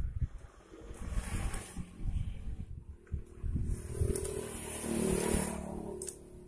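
Ring spanner working the cylinder-head nuts of a Honda Beat FI scooter engine, with small irregular metal knocks and scrapes. Near the end a vehicle engine swells up and fades in the background.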